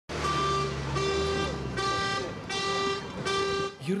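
A vehicle horn sounding five times in a steady rhythm, about one blast every three-quarters of a second, each blast about half a second long.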